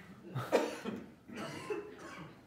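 A person coughing twice: a sharp first cough about half a second in, then a second, longer one about a second later.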